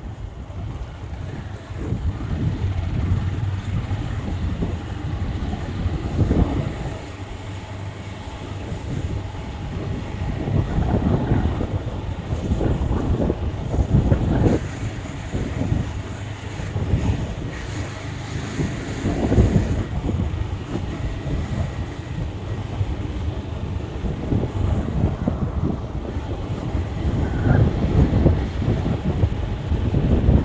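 Wind buffeting the microphone over the low rumble of a vehicle travelling on a dirt road, swelling louder every few seconds.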